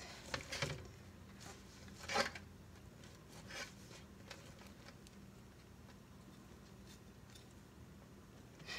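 Faint scraping strokes of a metal fork raking roasted spaghetti squash flesh into strands, scattered through the first few seconds with the clearest about two seconds in, then thinning out.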